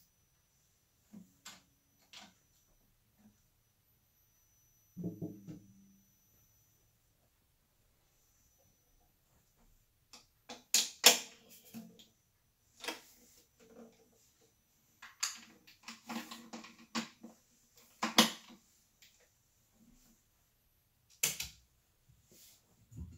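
Handling noise from acoustic guitars being swapped and readied: scattered clicks, a short low thump about five seconds in, then a busier run of sharp knocks and clicks in the second half.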